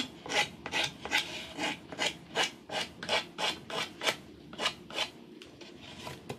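Emery-board nail file rasping back and forth along the edge of a decoupaged wooden plaque, about three strokes a second, wearing away the excess napkin at the edge. The strokes weaken near the end.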